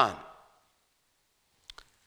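A man's spoken word trails off, then after a pause two faint quick mouth clicks come just before he speaks again.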